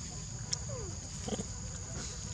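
A steady high insect drone, with a short falling squeak a little under a second in and a brief low grunt just after, from young macaques feeding on fruit.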